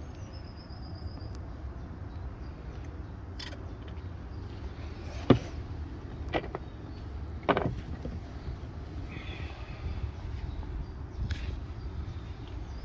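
A few sharp clicks and knocks from hands working the latches and clamp of a Hurricane fibre cable blowing machine: the loudest about five seconds in, two more within the next two seconds. Under them runs a steady low rumble.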